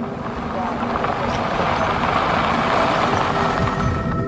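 Pickup trucks driving along a dirt road: engine and tyre-on-gravel noise that grows louder over a few seconds, then cuts off.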